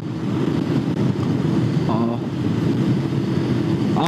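Bajaj Pulsar 150's single-cylinder engine running steadily at a cruise of about 65 km/h, heard from the saddle with wind and road noise over it. A brief bit of voice comes about halfway.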